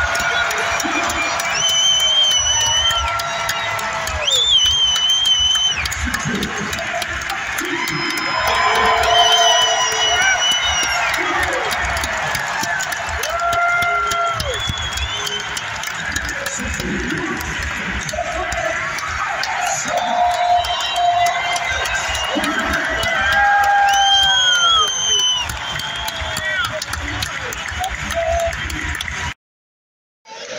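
Arena public-address announcer calling out players' names in long, drawn-out calls over the arena speakers, echoing, with music and crowd cheering beneath. The sound cuts off abruptly just before the end.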